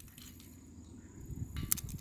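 Low rumbling noise on the microphone that grows louder toward the end, with a few light clicks near the end.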